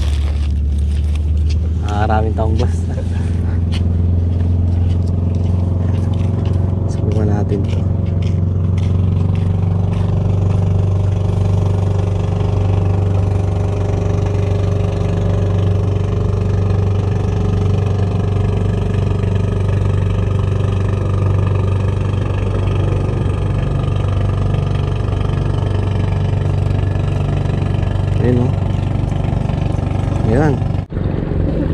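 A loud, steady, low engine drone, a deep hum with several even tones stacked above it. Light clicks and rustles of handling fall over it in the first several seconds.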